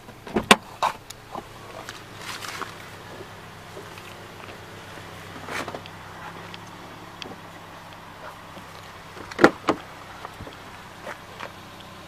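Car doors being handled: a sharp clunk and a few clicks near the start, soft rustles and scuffs, then a loud latch knock near the end as a rear door is opened. A faint steady low hum runs underneath.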